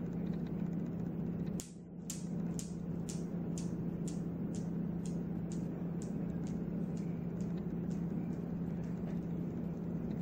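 Metal balls of a homemade Newton's cradle clacking together in an even rhythm of about two clicks a second, the clicks slowly growing fainter as the swing dies down. A steady low hum lies underneath.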